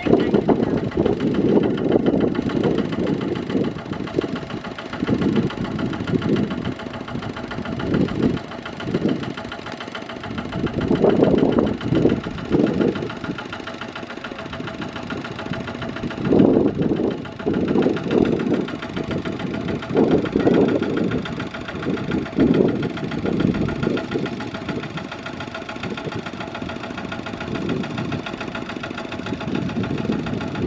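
Kubota RT155 walking tractor's single-cylinder diesel engine running with a knocking beat, swelling louder in repeated surges every few seconds while the tractor is bogged in mud.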